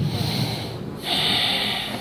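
Two forceful breaths, noisy and hissing, close to the microphone: a short one at the start and a longer one about a second in.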